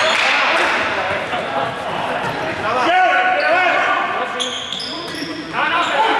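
Sports-hall game noise: players' voices calling out and chattering, echoing around a large hall, with brief high squeaks about four and a half to five seconds in, typical of sneakers on the court floor.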